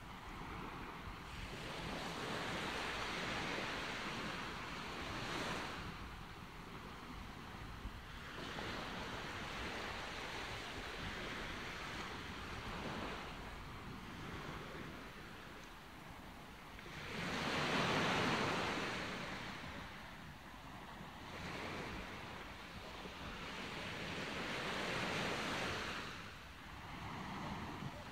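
Wind gusting over the microphone outdoors: a rushing noise that swells and fades every few seconds, with its strongest gust about two-thirds of the way through.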